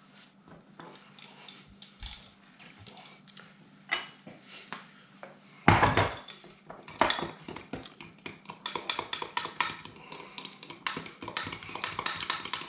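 Metal fork clinking against a glass measuring cup while stirring a liquid sauce: a rapid run of light ticks through the second half, after a single louder knock just before the middle.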